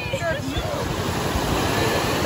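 An engine running with a steady low rumble, under faint voices of people talking.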